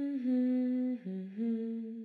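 A voice humming a slow, wordless tune in long held notes. The pitch steps down about a second in, rises again shortly after, and the phrase fades out near the end.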